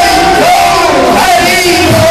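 A crowd of voices singing and calling out together in a devotional kirtan chant, with long held notes; the low beat of the accompaniment drops back, then returns near the end.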